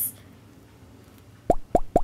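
Quiet room tone, then three quick, short pops about a second and a half in.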